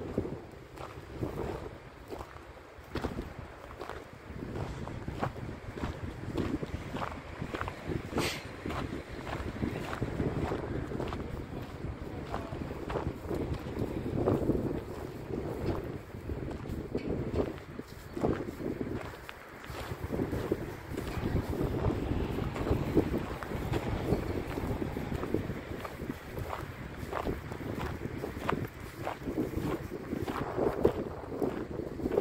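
Wind buffeting the microphone, with frequent small rustles and crunches of steps through dry, dead grass.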